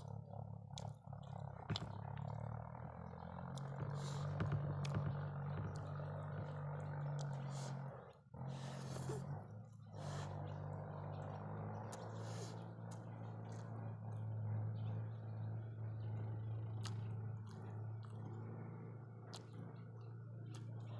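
Close-up eating sounds: chewing and wet mouth clicks from someone eating rice by hand, with a longer noisy smack about halfway. A steady low hum runs underneath.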